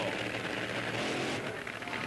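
Nitro-burning top fuel dragster engines idling at the starting line, a steady even noise with no revving.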